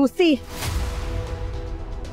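A short, loud spoken exclamation at the start. Then, about half a second in, a dramatic sound-effect swell with a deep rumble rises over the drama's background score and holds to the end.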